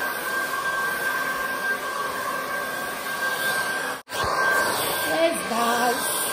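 Handheld hair dryer running steadily: a constant rush of blown air with a steady high whine. The sound cuts out for an instant about four seconds in, then carries on.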